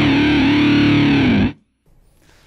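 Distorted electric guitar (Fender Stratocaster through a Universal Audio UAFX Astra modulation pedal with a Red Rox pedal, into a Fender '65 Twin Reverb) with a sweeping flanger tone. It holds a note that wavers and bends down, then cuts off suddenly about one and a half seconds in.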